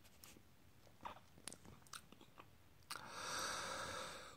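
Faint mouth clicks and lip smacks of someone savouring a sip of strong beer, followed near the end by a soft breathy exhale.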